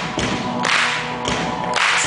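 Live rock band playing a song, recorded from the audience: drum hits on a steady beat, a little over half a second apart, each with a bright crashing wash, over sustained pitched notes.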